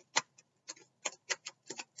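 A deck of cards being shuffled by hand, giving about ten sharp, irregular clicks and taps.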